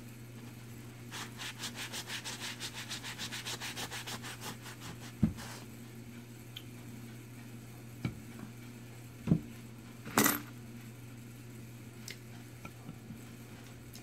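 Paper towel rubbed briskly back and forth over burlap stretched on a wooden board, wiping off wet paint, in quick even strokes about six a second for several seconds. After that come a few light knocks and taps, the sharpest about ten seconds in.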